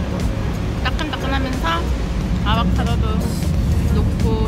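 Steady low rumble of a moving vehicle, with short snatches of voice or sung melody over it about a second in and again about two and a half seconds in.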